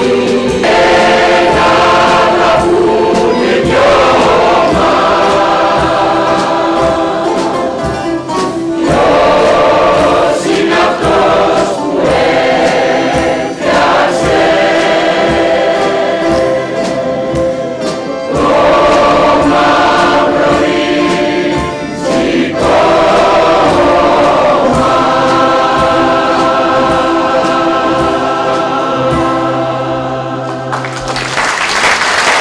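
Mixed choir of men and women singing in parts, sustained phrases separated by short breaks.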